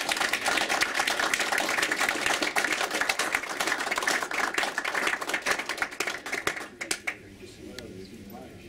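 Small audience applauding with dense hand claps, which stop suddenly about seven seconds in.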